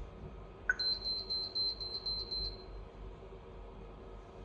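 A short key tone as OK is tapped on the HOMSECUR HDK SIP(B19) video intercom's touchscreen monitor. It is followed by the intercom's buzzer beeping seven times in quick succession, about four beeps a second, which confirms that all stored IC card users have been deleted.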